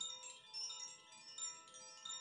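Four hanging wooden tube chimes, stirred by hand, ringing softly: several clear tones overlap and sustain, with a few light fresh strikes along the way.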